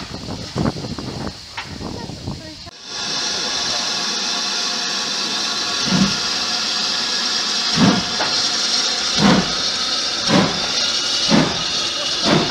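BR Standard Class 5MT steam locomotive starting away: a steady steam hiss comes on suddenly about three seconds in, and from halfway through its exhaust beats, coming closer together as it picks up speed.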